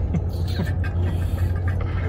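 Steady low road and engine rumble inside a moving car's cabin. In the first second come a few short creaks and clicks, which the passenger takes for a plastic water bottle making noises on the floor.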